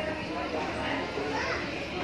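Background chatter of several people in a shopping mall, children's voices among them, overlapping with no one voice standing out.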